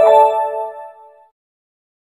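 Short electronic chime from the exercise software: a chord of a few bright tones that starts sharply and fades out within about a second and a half. It is the correct-answer feedback sound.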